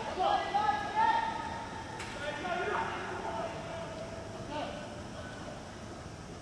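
Distant shouts and long drawn-out calls from footballers on the pitch, loudest in the first second or so. There is a single sharp click about two seconds in.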